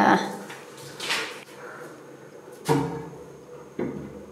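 Wooden shelf board knocking against the walls as it is tried in place, a few short thumps with the loudest about two and a half seconds in.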